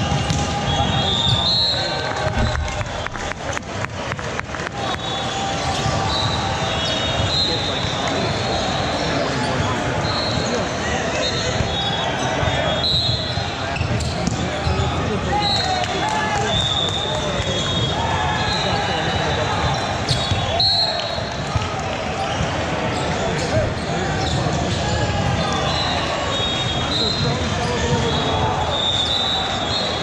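Echoing gym ambience during a volleyball match: a steady babble of voices and shouts, balls being struck and bouncing, and short high squeaks of sneakers on the hardwood floor. There is a quick run of sharp knocks a few seconds in.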